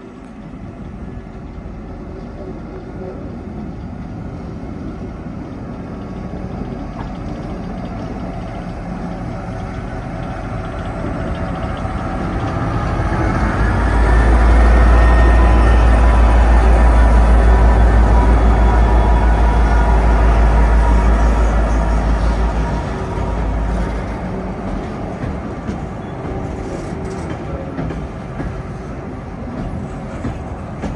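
A Watco Australia WRA-class diesel locomotive approaching and passing close by, its low engine rumble building to its loudest as it goes past, with a whine that rises in pitch over it. After it goes by, the grain hopper wagons roll past more quietly with faint wheel clicks.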